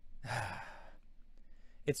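A man sighs, one breathy exhale of about half a second into a close microphone, before he starts speaking again near the end.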